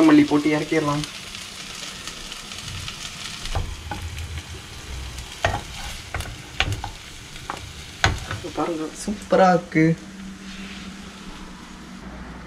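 Lotus root slices sizzling as they fry in a pan, with a wooden spatula stirring and scraping against the pan in several sharp strokes around the middle.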